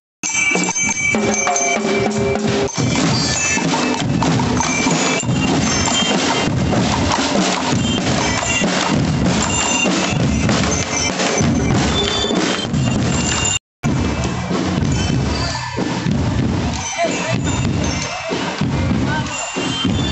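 Marching band of snare, tenor and bass drums with bell lyres playing a driving drum cadence, the lyres ringing high notes over the rapid strikes. The sound drops out for an instant about two-thirds of the way through.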